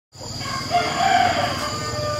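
A rooster crowing once, in one long call.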